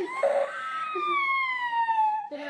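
A young girl's long, high-pitched wailing cry that slowly falls in pitch, starting about a second in, after a short cry near the start. She is frightened and crying.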